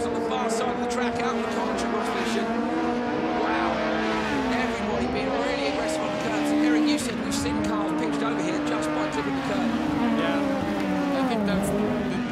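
Several Super 1600 rallycross cars, small front-wheel-drive hatchbacks with 1.6-litre engines, racing at full throttle. Several engine notes rise and fall together as they shift gear and brake for a corner, with scattered sharp clicks and cracks over the top.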